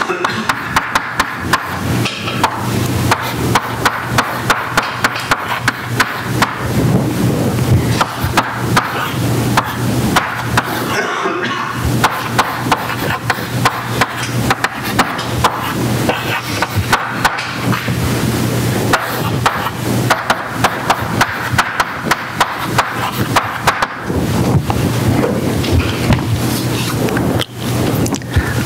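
Chalk writing on a blackboard: a quick, uneven run of sharp taps and scratches as symbols are struck and drawn, with a steady low hum underneath.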